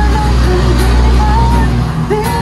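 A man singing a serenade to his own acoustic guitar, with a strong low steady rumble underneath that fits a passing road vehicle.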